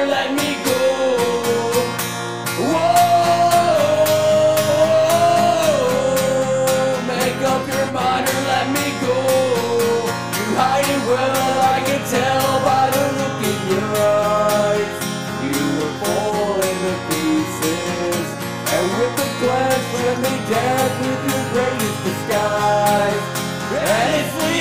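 Acoustic guitar strummed steadily, with a male voice singing a held, sliding melody over it.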